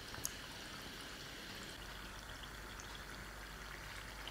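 Rice-flour vadas deep-frying in hot oil in a wok: a faint, steady sizzle and bubbling of the oil, with one faint tick near the start.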